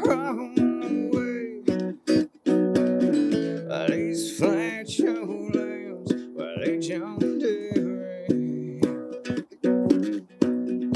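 A song played on a plucked string instrument, notes picked in a steady rhythm throughout.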